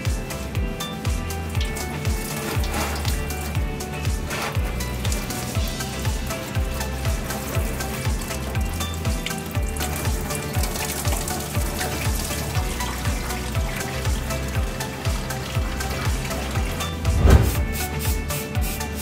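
Background music with a steady beat over red engine coolant running and splashing out of a disconnected coolant hose as the system drains. A short louder burst comes near the end.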